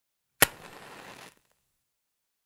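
A single sharp click followed by about a second of steady hiss that cuts off suddenly.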